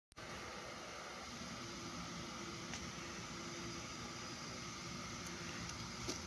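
Steady low hiss of room noise with a faint hum, broken by a few faint small ticks in the second half.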